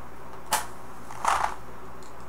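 Small handling sounds from a tobacco pipe and a small box: a sharp click about half a second in, then a short breathy rush about a second later.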